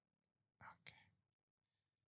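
Near silence, broken by a faint whisper a little over half a second in, followed by a brief faint click just before one second.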